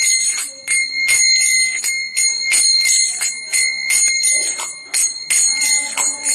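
Small brass hand cymbals (kartals) struck in a steady kirtan rhythm, about three strikes a second, each strike ringing on with a clear high metallic tone.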